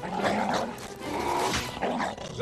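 A cartoon dog-like creature snarling and growling in two rough bursts, one near the start and one about a second and a half in.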